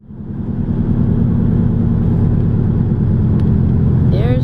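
Steady road and engine rumble heard from inside a moving car at highway speed. It fades in over the first second.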